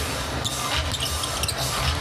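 Court sound of a live basketball game: a ball being dribbled on the hardwood floor, a series of low thuds, over a steady arena background.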